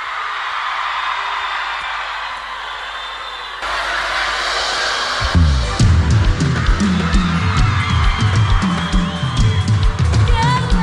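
Live concert audio: an audience cheering with a noisy, steady wash of sound, then about five seconds in the band comes in with bass guitar and a kick drum beating steadily.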